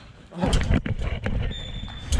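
Goalmouth scramble close to the goal camera: thuds, scuffling and shouting as the goalkeeper dives at an attacker's feet and a goal goes in. Near the end, the referee's whistle gives a short, steady, high blast for the goal.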